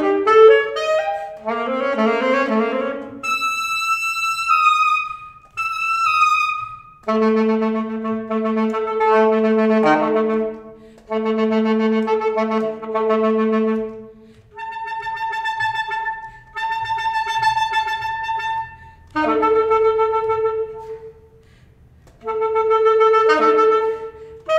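Unaccompanied alto saxophone playing a contemporary solo piece: a quick run of notes, then high held notes, then long low notes, in separate phrases with short breaths between them.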